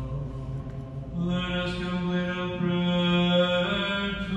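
Orthodox liturgical chant sung by a male voice in long, held notes; the pitch steps up and the chant grows louder about a second in.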